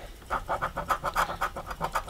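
A heavy copper coin scratching the coating off a scratch-off lottery ticket, in quick back-and-forth strokes of about eight a second that start about a third of a second in.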